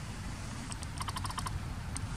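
A macaque chewing a piece of fruit: a quick run of short crunching clicks about a second in, over a steady low background rumble.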